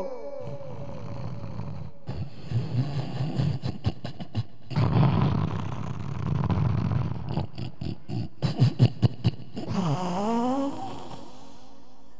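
A man sobbing and breathing hard close to a handheld microphone, with a run of short catching gasps, then a brief wavering, wailing cry about ten seconds in.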